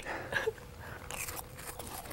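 Crackers being bitten and chewed: faint, scattered crunches.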